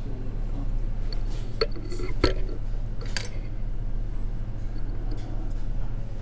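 A few small, sharp metallic clicks and taps from fly-tying tools, a whip-finish tool and scissors, as the thread is whip-finished at the fly's head, the sharpest about two seconds in, over a steady low hum.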